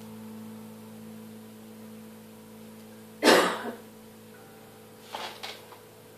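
A man coughs once, loudly and briefly, about three seconds in, and a second, quieter cough or throat-clear follows about two seconds later. Both sit over a steady low electrical hum.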